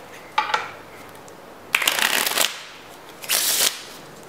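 A deck of playing cards being riffle-shuffled on a table. There is a short burst about half a second in, a rippling riffle lasting under a second in the middle, and a shorter burst near the end.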